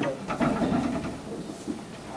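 Indistinct murmur of several voices talking quietly at once, with a few brief knocks near the start and about half a second in.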